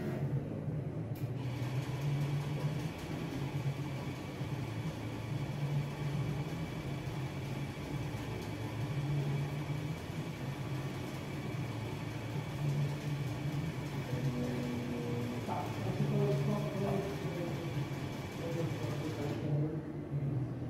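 Farsoon eForm selective laser sintering 3D printer running: a steady low hum with a high, even whine that starts about a second in and stops just before the end.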